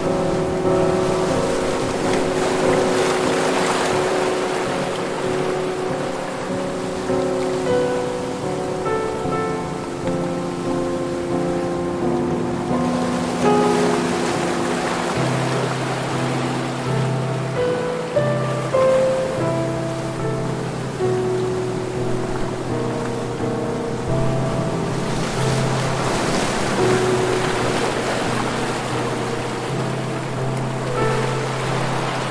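Soft, slow instrumental music of long held notes over the sound of ocean waves washing onto a beach. The surf swells and fades three times.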